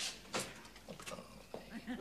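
An elderly man laughing quietly to himself in a few short bursts, loudest at the start and about half a second in, then fading.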